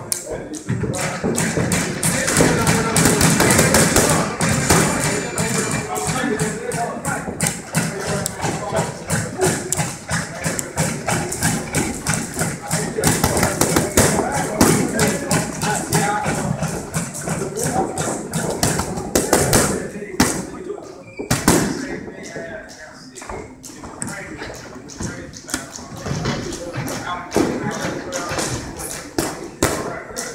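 Boxing gloves striking focus mitts in fast combinations during pad work, a steady stream of sharp smacks with a brief pause about two-thirds of the way through. Music plays underneath.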